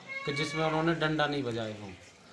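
A man speaking, his voice drawn out and slowly falling in pitch.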